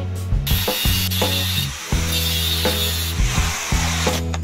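Metal scraping and rattling as a steel bar is set and clamped in a bench vise, in two stretches of about a second each, over background music.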